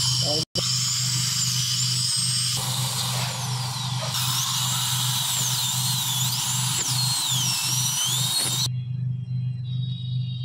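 High-speed air-turbine dental handpiece cutting into a molar: a loud, high whine whose pitch wavers up and down as the bur meets the tooth, over a steady low hum. It cuts off suddenly near the end.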